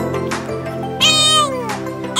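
Background music, with a loud, high-pitched meow-like cry about a second in that slides down in pitch.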